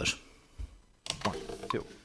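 A single soft low thump about half a second in, then a man's voice murmuring faintly.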